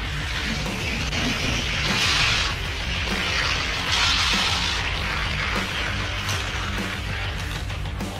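Die-cast Hot Wheels cars rolling at speed along orange plastic track: a rushing rattle that swells about two seconds in and again about four seconds in. Background music plays underneath.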